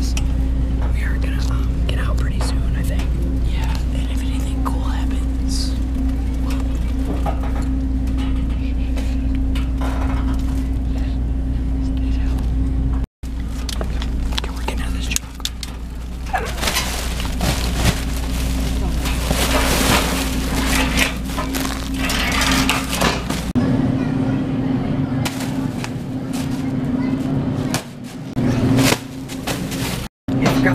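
Plastic-wrapped packs of paper towels and toilet paper rustling and crinkling as they are pushed and shifted, loudest and densest in the middle stretch, over a steady low hum.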